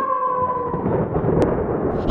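A long wolf howl, held on one note and sinking slightly in pitch, fades out about a second in over a low rumble.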